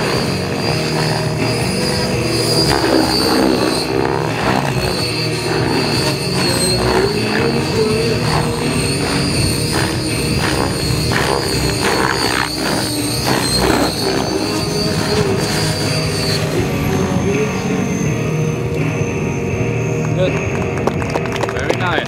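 Radio-controlled helicopter (MTTEC 7HV) being flown hard, its high whine wavering with the manoeuvres, under music that plays throughout. The high whine drops out about sixteen seconds in.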